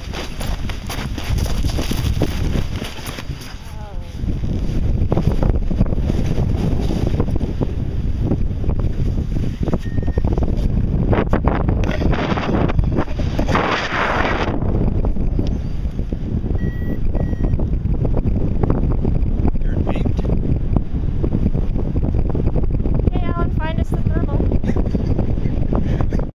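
Wind buffeting the camera microphone of a tandem paraglider just after launch. The steady rushing noise gets louder about four seconds in as the glider takes off and then holds, with voices near the end.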